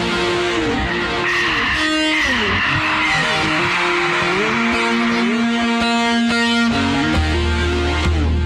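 A recorded piece of music led by electric guitar: long held notes that slide up and down between pitches, with a deep low hum coming in near the end.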